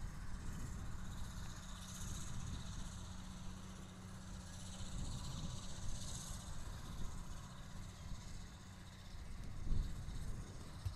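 Outdoor ambience: a steady low rumble with a faint hiss over it and no distinct events.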